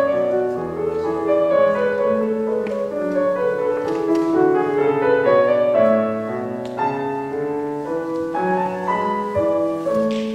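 Steinway & Sons grand piano played solo in a classical piece: a continuous stream of notes in several voices at once, with no pauses.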